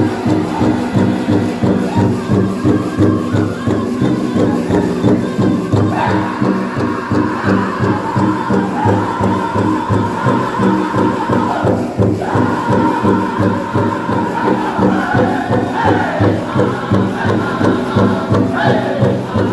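Powwow drum group singing a jingle dress dance song over a steady, fast drumbeat. The high lead line comes in sharply several times, each time falling in pitch.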